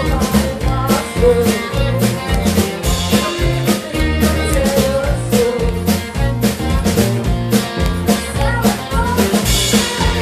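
Live rock band playing: a drum kit keeps a steady, driving beat under electric bass and electric and acoustic guitars.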